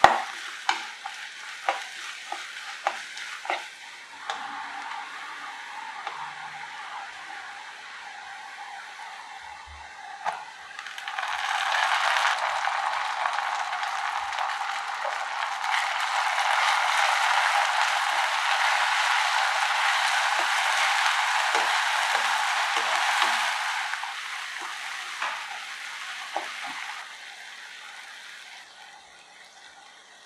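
Chopped onion and dry red chilli sizzling in hot oil in a wok, stirred with a wooden spatula that knocks against the pan several times in the first few seconds. About eleven seconds in the sizzle grows much louder, with chopped tomato and ginger-garlic paste in the pan, then dies down again in the last few seconds.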